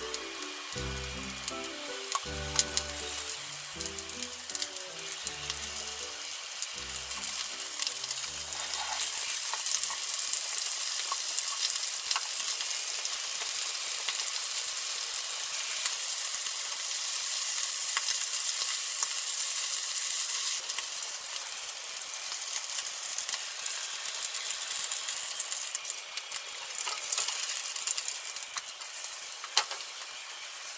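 Panko-coated shishamo shallow-frying in oil in a frying pan: a steady sizzle that grows louder about ten seconds in and eases off near the end. Light background music plays under it for the first nine seconds or so.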